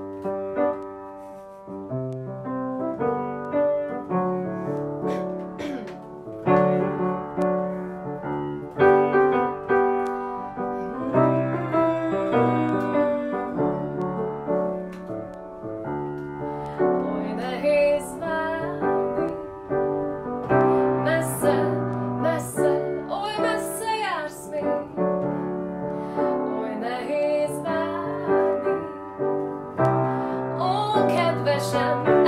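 A grand piano plays a beat song arranged for solo piano, and partway through a woman's voice joins it, singing.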